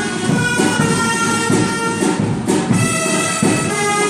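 Live traditional Catalan band music: reedy wind instruments hold a melody of sustained notes, with percussion underneath.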